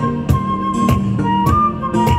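Flute playing a melody of long held notes, over violin and a steady percussion beat of about three strokes a second.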